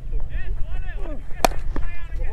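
A single sharp crack about one and a half seconds in: a cricket bat striking the ball off a full toss. Voices of players and commentary carry on around it.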